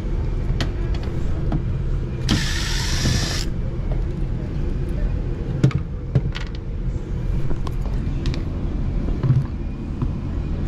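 Steady low hum of a running Ruud air handler's indoor blower. A burst of hiss lasts about a second, starting about two seconds in, and a few light knocks from handling come later.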